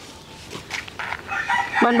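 A rooster crowing: one long call that starts about a second in and is still going at the end, with a woman's voice briefly over it near the end.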